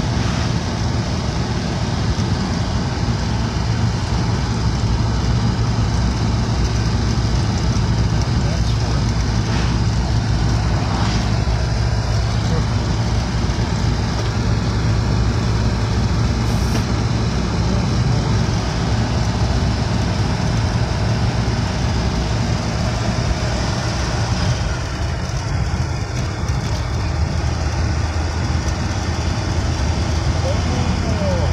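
A 1938 Graham Sharknose's straight-six engine and road noise heard from inside the cabin while cruising: a steady low engine drone over tyre and wind rumble. About 25 seconds in, the engine note drops lower and a little quieter.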